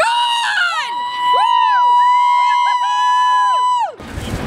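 A woman's high-pitched celebratory scream, falling in pitch at first and then held steady for about three seconds, as in cheering a home run.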